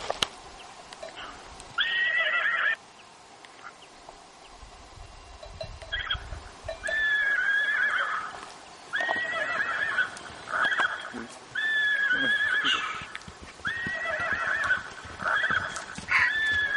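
Horses whinnying repeatedly: about six high calls, each roughly a second long, with a few hoofbeats between them.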